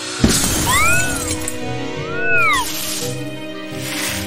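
Cartoon sound effects over background music: a sudden crash with a shattering sound just after the start, then two swooping tones that each rise and fall in pitch, one about a second in and one a little over two seconds in.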